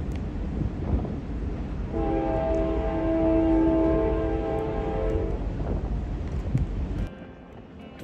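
A freight locomotive's multi-chime air horn sounds one chord for about three and a half seconds, starting about two seconds in. It sits over a steady low rumble that cuts off suddenly near the end.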